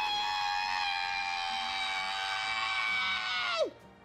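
A man's long, high scream in a cartoonish puppet-character voice, held at one steady pitch. About three and a half seconds in, the pitch drops away and the scream cuts off.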